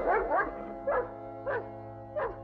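Background music of held chords, with a dog giving a few short, sharp yaps over it about half a second apart.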